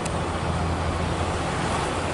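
Low, steady hum of a nearby vehicle's engine running, over a broad rushing background noise; the hum eases near the end.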